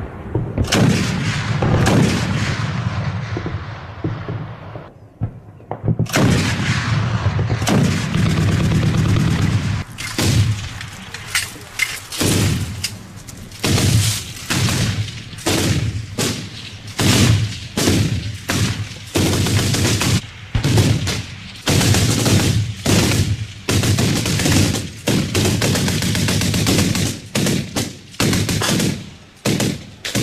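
Gunfire from automatic weapons: repeated shots and bursts that overlap almost without a break, with a brief lull about five seconds in.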